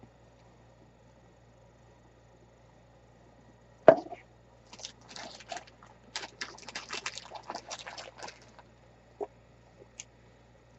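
Small handling sounds of craft items on a work table: a single sharp knock about four seconds in, then a few seconds of light, irregular clicks and rustles, and one more small tick near the end.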